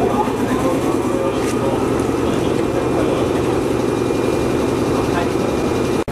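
Indistinct chatter of a crowd on a station platform, over a steady low hum from a parked electric train.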